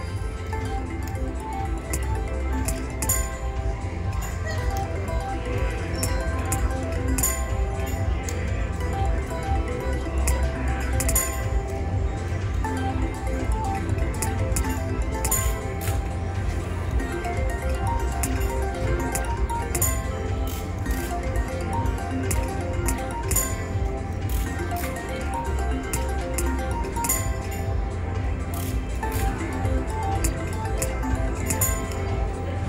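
Slot machine play in a casino: a three-reel Megabucks slot spun again and again, with a sharp click about every four seconds, over a constant bed of electronic chimes and tones from the machines around it.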